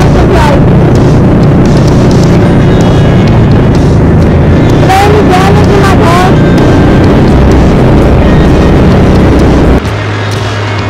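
Onboard sound of a junior off-road race kart's engine running hard at race speed on a dirt track, loud and steady, with a few sharp jolts and pitch swoops around the start and about five seconds in. It cuts off sharply just before the end.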